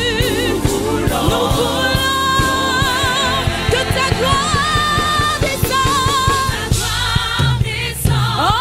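Live gospel worship song: a woman sings lead into a microphone with a wide vibrato on long held notes, backed by a choir and a band with a steady drum beat and bass.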